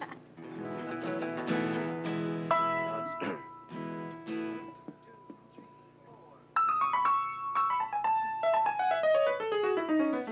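A live folk band starts a tune with held chords on keyboard and strings. About six and a half seconds in, a louder run of single notes steps downward.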